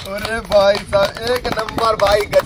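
Voices talking after the dance, with a few scattered hand claps.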